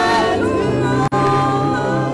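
Voices singing a gospel song in long held notes, with a sudden very brief dropout in the sound about halfway.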